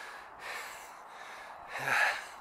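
A person's heavy breathing close to the microphone, in a run of hissy breaths, out of breath after climbing to the top. A short spoken "yeah" comes near the end.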